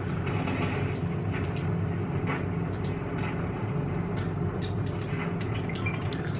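A steady low rumble, even throughout, with a few faint soft ticks.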